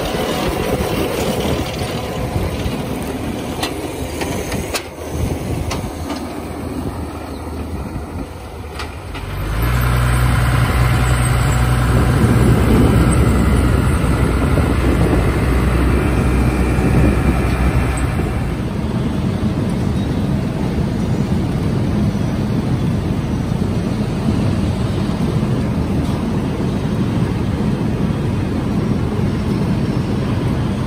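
A New Holland tractor and the potato harvester it pulls running in the field. The first part is a mixed machinery rattle with a few sharp clicks; then, about ten seconds in, a loud steady engine drone sets in. It eases into a more even rumble after about eighteen seconds.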